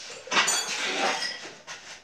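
Loaded steel barbell clinking during a bench press: a sharp metallic clink with a short ring about half a second in, then a second of rustling noise and a fainter click near the end.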